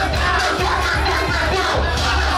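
Loud dance music with a heavy, steady bass, under a crowd cheering and shouting.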